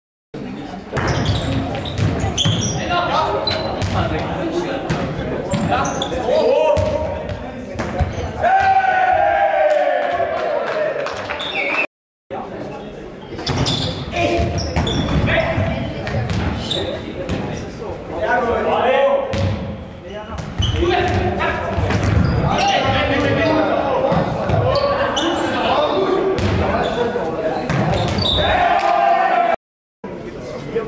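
Faustball rallies in a large sports hall: the leather ball thumping off players' fists and bouncing on the floor, with players shouting to each other, all echoing in the hall. The sound drops out briefly three times: near the start, about twelve seconds in, and just before the end.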